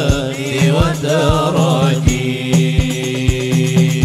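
Hadroh ensemble performing sholawat: male voices singing a wavering devotional melody over a steady beat of frame drums. About halfway through, the melody settles into a long held note while the drum strokes carry on.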